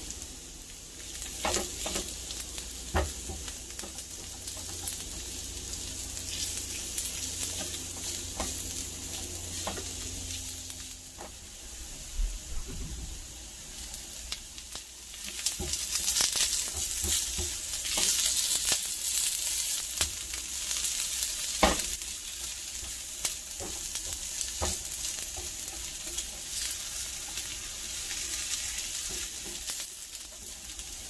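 Onions, garlic and green chili sizzling as they fry in oil in a wide, shallow metal pan, stirred with a silicone spatula that clicks and scrapes against the pan now and then. The sizzle grows louder about halfway through.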